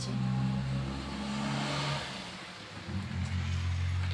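A low, steady engine-like hum that shifts down to a lower pitch between two and three seconds in, with a faint hiss above it.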